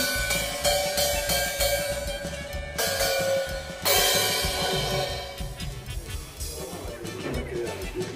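Brass cymbals struck with a drumstick one after another to compare their sound, each hit ringing on and slowly fading. The two loudest strikes come about three and four seconds in.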